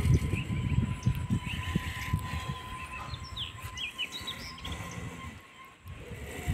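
Outdoor rural ambience: a low rumbling noise, strongest in the first three seconds, with small birds chirping several times near the middle and a faint steady tone underneath.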